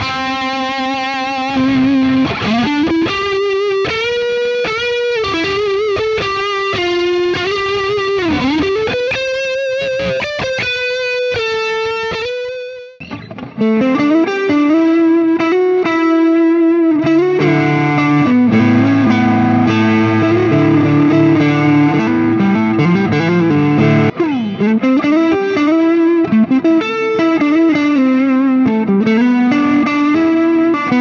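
Ernie Ball Music Man Cutlass electric guitar playing an overdriven lead line with string bends and vibrato on its bridge single-coil pickup. About 13 seconds in it breaks off briefly and carries on with the neck pickup, playing busier lead phrases.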